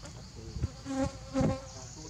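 A flying insect, such as a fly or bee, buzzing close to the microphone in a few short bursts, loudest about a second and a half in.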